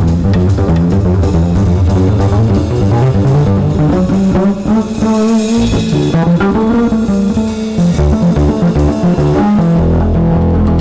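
Live jazz band: an upright double bass plucked in busy, fast-moving lines over a drum kit.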